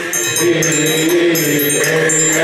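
Men's voices chanting a Coptic hymn in unison on long held notes, with a hand-held metal triangle ringing in a steady repeated beat over the chant.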